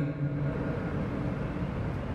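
Steady low hum and hiss of background room noise picked up by an open microphone, with no distinct event.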